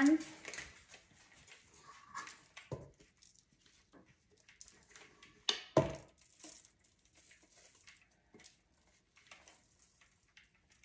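Spatula scraping thick, heavy batter out of a stainless steel mixing bowl into a baking pan, with soft scrapes and clicks and two sharp knocks against the bowl or pan, about three and six seconds in.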